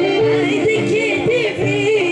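Live Greek traditional folk band music: an ornamented, wavering lead melody with singing over the band's steady beat.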